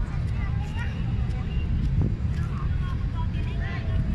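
Wind rumbling on a Huawei Nova 3i smartphone's microphone, a steady, uneven low buffeting, with faint voices in the background.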